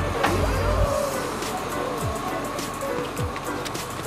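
Background music with a steady beat: a deep bass note that drops in pitch about once a second, over sustained higher tones.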